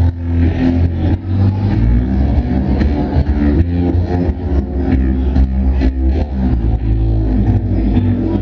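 A live band playing a loud instrumental groove, with a deep, driving bass line under changing plucked notes and frequent percussion strikes, heard from the audience.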